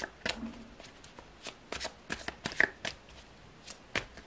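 A tarot deck being shuffled by hand: a run of irregular, sharp slaps and flutters of cards, loudest about two and a half seconds in.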